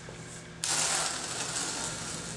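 A steel trowel scraping and combing tile mortar across a cement backer board. It starts suddenly about half a second in as a continuous gritty scrape.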